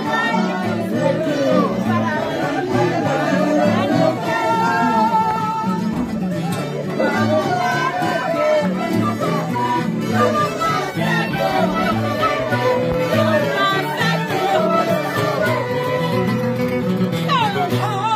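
A live band of acoustic guitars, violin and accordion playing a lively dance tune, the guitars keeping a steady bass pattern under a violin melody with vibrato.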